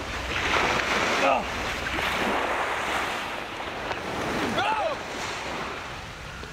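Surf washing on a beach, with wind on the microphone. A short vocal cry comes about four and a half seconds in.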